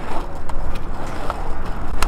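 Small plastic wheels of a toy kick scooter rolling over concrete: a steady rumble with a few sharp clicks.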